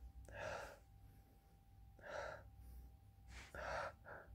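Three faint, breathy inhalations about a second and a half apart: a person sniffing perfume freshly sprayed on the skin to judge its scent.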